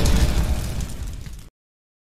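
Explosion sound effect of a logo intro, with low sustained tones underneath, dying away and cutting off about a second and a half in.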